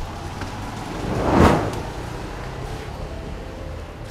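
A short whoosh that swells to a peak about a second and a half in and quickly fades, over a steady low hum.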